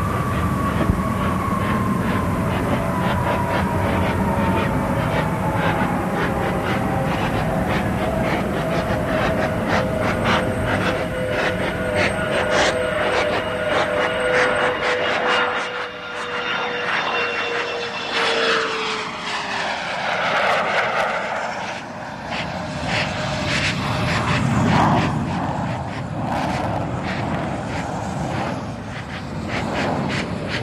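Jet aircraft flying low overhead: its engine whine falls slowly in pitch, then sweeps down and back up as it passes, about two-thirds of the way through, over a steady rumble with scattered crackles.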